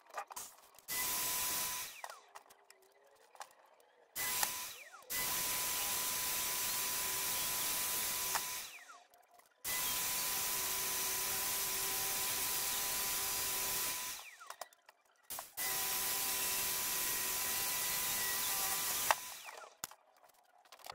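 Corded reciprocating saw cutting into a fresh green log, switched on in five runs of one to five seconds with short pauses between. Each run is a steady, even noise with a held tone.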